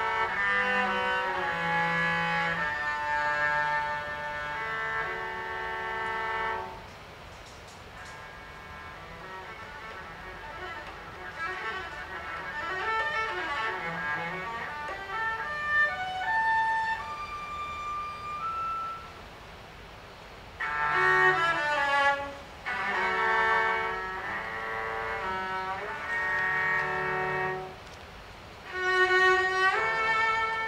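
Cello played with the bow, with grand piano accompaniment, in a classical piece. Loud, full passages open and close the stretch; in between comes a softer passage where single notes climb higher and higher.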